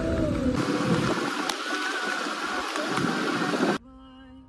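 Road and wind noise of a car driving along a dirt track, heard from outside the car's window, steady until it cuts off suddenly near the end.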